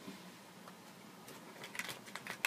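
Quiet room tone with a few faint light clicks and taps in the last half-second, like small handling noises.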